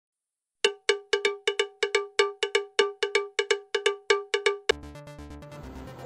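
A bright cowbell-like struck tone repeated about twenty times in a quick, lilting rhythm over about four seconds, each strike dying away fast. It gives way to a faint low steady hum near the end.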